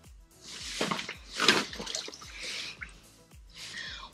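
Water splashing and sloshing in an ice-fishing hole as a hooked whitefish thrashes at the surface, in a few irregular bursts, the loudest about one and a half seconds in. Faint background music runs underneath.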